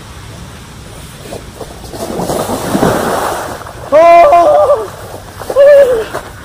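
Two loud wordless yells from a man fleeing, the first about four seconds in and the second shorter near the end, after a rush of noise that builds for about a second and a half.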